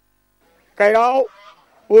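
Dead silence for most of the first second, then a man's voice: one held syllable of about half a second, and another starting just before the end as he begins to speak.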